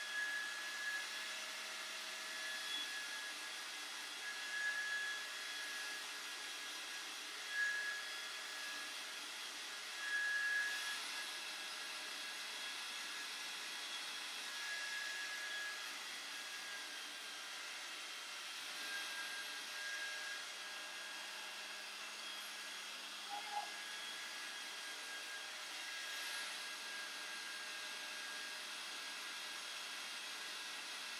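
John Frieda Volume hand-held hair dryer running steadily, a rushing air stream with a faint steady whine, swelling briefly now and then as it is moved through the hair.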